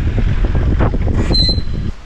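Wind buffeting the microphone in a steady, heavy low rumble, with a brief high thin note about a second and a half in.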